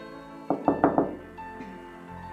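Four quick knocks on a door, about a second in, over soft background music.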